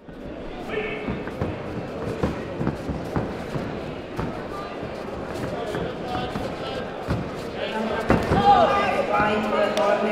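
Sports-hall noise of a kickboxing point-fighting bout: repeated sharp thuds and slaps from the fighters' footwork on the mats and gloved strikes, over a hubbub of voices. Shouting grows louder in the last two seconds or so.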